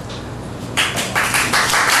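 Audience applause: many hands clapping, starting suddenly about three-quarters of a second in and building.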